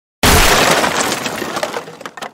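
Animated sound effect of a wooden crate smashing apart: one sudden loud crash about a fifth of a second in, with splintering debris rattling and fading over the next second and a half.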